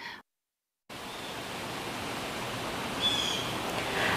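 The sound cuts out completely for a moment, then a steady outdoor background hiss starts abruptly about a second in and runs on at moderate level, with one short high chirp near the end.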